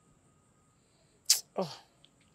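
Quiet room tone, then about a second and a quarter in a single short, sharp burst of noise, followed at once by a voice exclaiming 'oh' with a steeply falling pitch.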